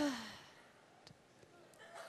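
A person's voice sliding down in pitch and trailing away within the first half second, then a hush with one faint click about a second in.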